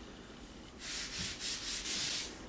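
The green scouring side of a damp sponge scrubbing dried joint compound on a drywall ceiling: wet sanding to smooth the seams. It starts about a second in, with a run of quick back-and-forth strokes, several a second.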